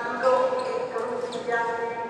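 Voices calling out in a large hall, one shouting "go" in a long drawn-out call, with a sharp click of a racket striking a shuttlecock about a second in.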